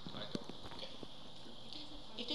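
Faint, low speech with a few sharp clicks or taps, the loudest about a third of a second in.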